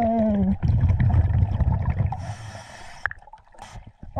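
A scuba diver breathing through a regulator underwater. A brief muffled voice sound at the start is followed by a low rumble of exhaled bubbles for about a second and a half, then a short hiss of inhalation through the regulator, with a briefer hiss near the end.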